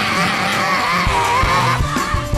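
Live gospel worship singing: a lead vocalist holds a high, wavering note over the voices of the congregation.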